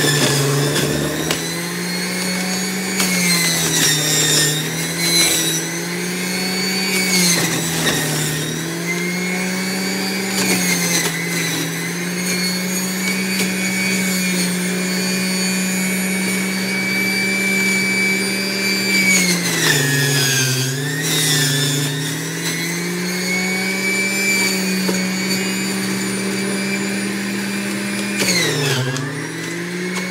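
Celery being juiced in a centrifugal juicer: the motor runs with a steady whine. Its pitch dips briefly several times, deepest about twenty seconds in and again near the end, as stalks are pushed into the spinning basket and load the motor, then it recovers.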